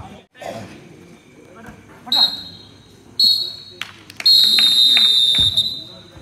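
Referee's pea whistle blown three times: two short blasts, then a long one. A ball is kicked with a thump at the start.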